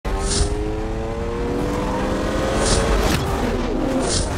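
Intro sound effect of a sports car engine, its note slowly climbing in pitch and then dropping away near the end like a car passing, with a swoosh near the start and another about two and a half seconds in.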